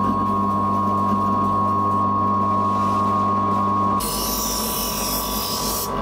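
Homemade bench grinder, a grinding wheel driven directly by an electric motor, running with a steady hum and a high whine. About four seconds in, a steel blade is pressed against the wheel, adding a hissing grind.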